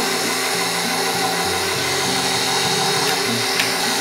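KitchenAid Professional 600 stand mixer running steadily, its flat beater mixing eggs into cheesecake batter.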